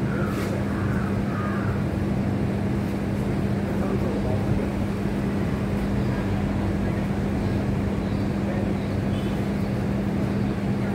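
A steady machine hum with a constant low drone and no change in pitch or level, with faint voices in the first couple of seconds.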